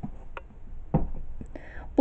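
A few short, soft knocks as a book is pulled from a bookshelf and handled, then a brief breathy sound near the end.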